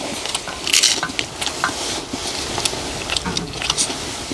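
Wooden spoons scraping and knocking against a large black iron wok in short, irregular strokes, digging up scorched rice crust stuck to the bottom of the pan.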